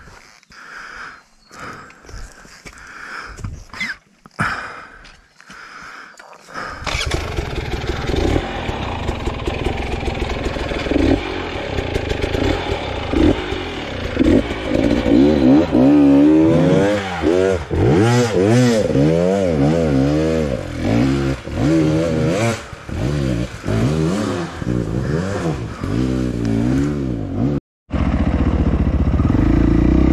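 Off-road dirt bike engine close to the microphone, starting up loud about seven seconds in and then revving up and down again and again as it rides a rough bush trail. Before it there are only a few scattered knocks.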